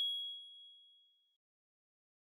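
A single high chime from the KOCOWA logo sting, struck just before and ringing out, fading away in a little over a second.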